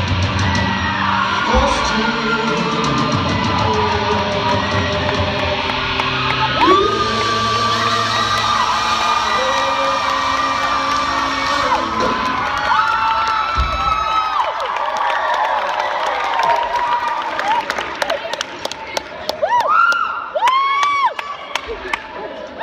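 A live rock band's last held electric guitar chords ringing out over bass and drums, stopping about fourteen seconds in, then the audience clapping, cheering and whooping at the song's end.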